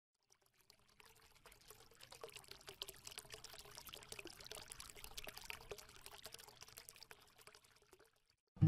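Faint crackling, trickling sound effect made of many small irregular clicks, building up a second or two in and thinning out near the end.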